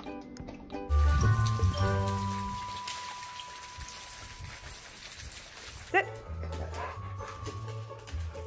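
A dog howling: one long, steady call that slowly fades, over background music with a low beat. About six seconds in, a dog gives a short, sharp bark.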